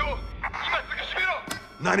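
Mostly voices: a few short vocal sounds, a sharp click about one and a half seconds in, and a man starting to speak at the end.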